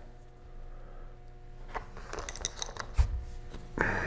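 Faint scraping and light clicks of a small hand tool working a tiny M.2 standoff into its threaded hole in a laptop, with a quick run of small ticks past the middle and one sharper click about three seconds in.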